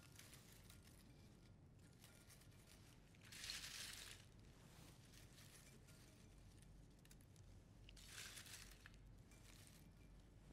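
Near silence broken twice by faint crackling rustles of crisp oven-baked bread strips being dropped and pressed onto lettuce, about three and a half seconds in and again about eight seconds in.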